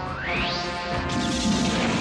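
Anime soundtrack music with sound effects mixed in: a rising sweep over the first half-second, then a noisy crash-like effect about a second in that carries on over the music.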